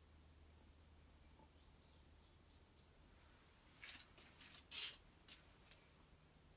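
Near silence with a steady low hum; from about four seconds in, a few brief, faint, gritty rasps as potassium permanganate crystals slide out of a glass vial into a beaker of concentrated sulfuric acid, the loudest just before five seconds.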